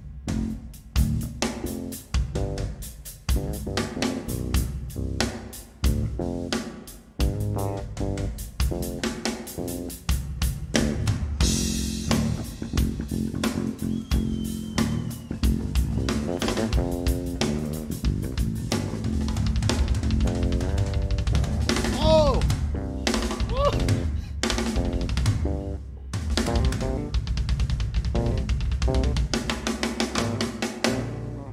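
Live drum kit and electric bass guitar playing a fast, busy groove, with rapid snare and tom strokes over a bass line. A cymbal crash rings out a little over a third of the way in, and the bass drum work grows denser through the second half.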